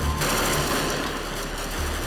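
Rapid rifle fire in a dense burst, with background music underneath.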